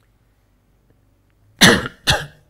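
A man coughs: near silence, then one loud, sharp cough near the end, with a second following right after.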